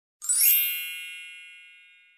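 A bright, shimmering chime sound effect: it starts with a quick rising sparkle about a quarter-second in, then rings on and fades away slowly.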